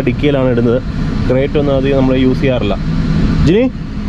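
Mostly people talking inside a car, over the steady low hum of the car's engine. A short rising sound comes near the end.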